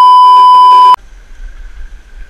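A loud, steady 1 kHz test-tone beep, the kind that goes with TV colour bars, lasts about a second and cuts off suddenly. It is followed by a much quieter low rumble of wind on the microphone on an open ski slope.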